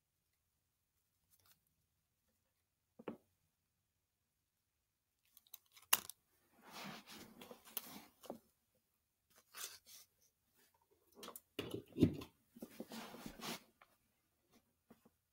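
Handling noises from a small slot car chassis being moved about on a paper instruction sheet over carpet. There is one sharp click about three seconds in. Later come irregular bursts of paper rustling and scraping with a few sharp clicks.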